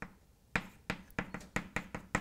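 Chalk tapping and clicking on a blackboard while symbols are written: a run of about seven sharp, irregular taps starting about half a second in.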